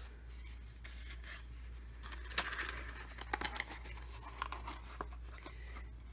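Paper and cardboard being handled: light rustling and a few short taps as foam die cuts and small cardboard boxes are moved about, over a low steady hum.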